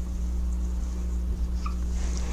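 Steady low electrical hum with faint hiss: the room tone of the recording, with no speech. A brief faint squeak about one and a half seconds in.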